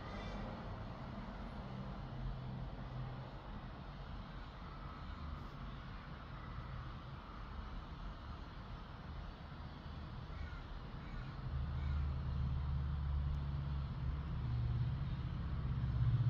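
Low rumble of passing road traffic, growing louder about two-thirds of the way through.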